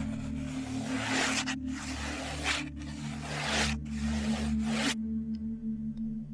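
Writing strokes scratching across a paper scroll: four long scrapes of about a second each, ending about five seconds in, over a soft steady ambient music drone.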